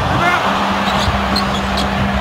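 Arena crowd noise during a live NBA basketball game as a player drives to the basket, with a steady low tone held from about half a second in.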